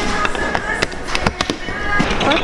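Large plastic Duplo-style bricks being handled, giving a run of irregular sharp clicks and clacks, over background music.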